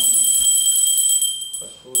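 Brass pooja hand bell rung continuously, a steady high ringing that breaks off for a moment near the end and starts again, as a man's chanting resumes.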